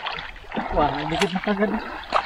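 Mostly speech: voices talking and exclaiming, over a steady outdoor noise that is most noticeable in the first half second.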